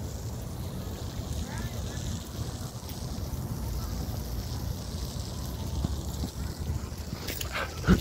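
Outdoor city-park background: a steady, uneven low rumble with faint voices in it, and a couple of sharp, louder sounds just before the end.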